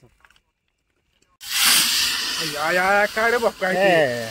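Hot oil in a cooking pot over a wood fire, hissing and sizzling loudly as it steams. The sound starts suddenly about a second and a half in, after near silence.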